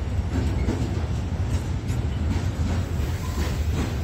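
Freight wagons rolling past: a steady low rumble with repeated clicks as the wheels run over the track.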